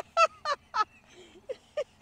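A person laughing in short bursts, a quick run of three 'ha's and then a couple of softer chuckles.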